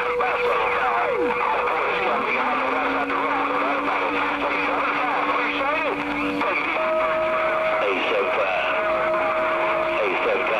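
CB base station radio receiving long-distance skip: several distant stations talk over one another, garbled under static, with steady heterodyne whistles from colliding carriers. One whistle slides up in pitch about two seconds in and holds, and another comes in near the end.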